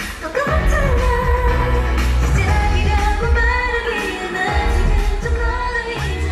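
K-pop dance song played loud at a live stage performance: a sung melody over a heavy bass beat.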